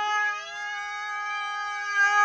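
A steady electronic tone held at one pitch with a stack of overtones. A second tone slides upward beneath it in the first half second, then levels off. It has the clean sound of a sound effect laid over the video.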